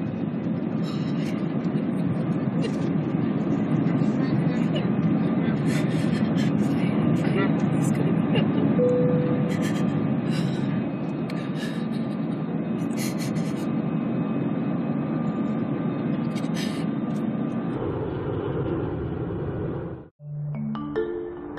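Airliner cabin noise: a steady rushing drone of engines and airflow, with scattered light clicks and rattles. A short tone sounds about nine seconds in.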